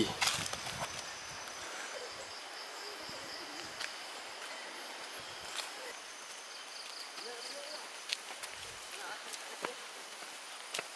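Footsteps of people walking in sneakers on an asphalt road, soft scattered steps over a quiet forest background. A faint high pulsing trill from the forest sounds twice.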